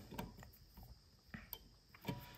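Near silence with a few faint short metal clicks as pliers squeeze the spring latch of an engine-hoist hook held in a vise.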